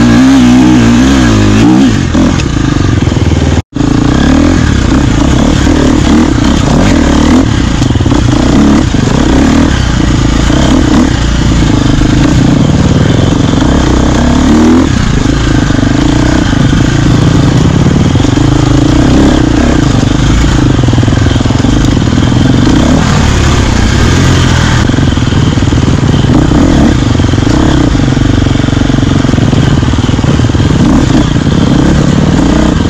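Enduro dirt bike engine running loud and steady, the revs rising and falling under changing throttle. The sound cuts out for an instant a little under four seconds in.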